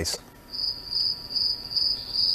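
Cricket chirping sound effect: a high chirp pulsing two to three times a second, starting about half a second in. It is the comic 'crickets' cue for a silence where there was no response at all.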